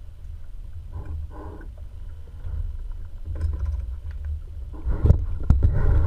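Muffled low rumble of water moving around a GoPro in its waterproof housing underwater, with brief bubbly gurgles about a second in and a cluster of knocks and splashes near the end.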